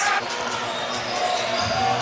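Basketball game sound in a gymnasium: steady crowd noise with a ball bouncing on the hardwood court.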